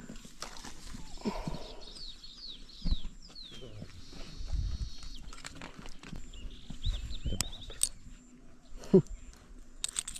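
A freshly landed murrel (snakehead) flapping on grass and being handled while the spoon lure is worked out of its mouth: soft rustling and a few scattered knocks.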